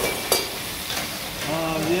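Chicken and whole tomatoes frying in hot oil in a steel karahi over a gas flame, a steady sizzle. There is one sharp clink about a third of a second in.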